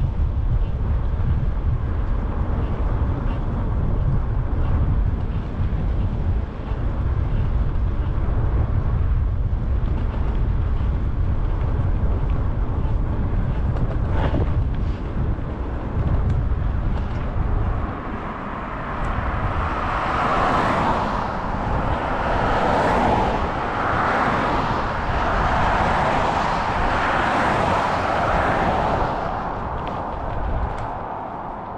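Wind rumbling on the microphone during a ride along a highway. After about 18 seconds it gives way to the hiss of passing road traffic, which swells and fades several times.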